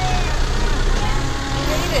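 Bus engine running with a steady low hum, with voices over it.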